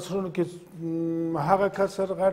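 A man's voice speaking, with one long held vowel in the middle before ordinary speech resumes.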